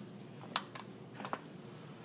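A few faint clicks from dissecting tools working on a preserved fetal pig: one sharp click about half a second in and a couple of smaller ones a little past a second, over quiet room tone.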